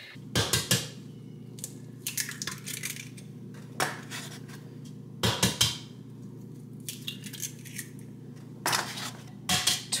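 Raw eggs being cracked one after another: sharp cracks and crunches of eggshell broken open over a plastic mixing bowl, coming every second or two.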